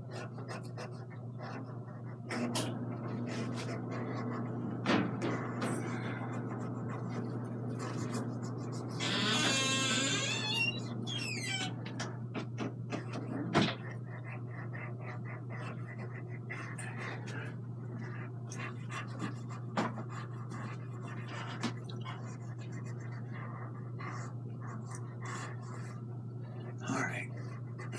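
A hand wiping oil underpainting off a canvas, with faint rubbing and handling noises over a steady low hum. A louder breath or rustle comes about nine to eleven seconds in, and a sharp click a little after thirteen seconds.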